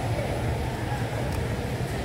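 Background ambience of an open-air hawker centre: a steady low rumble with faint voices.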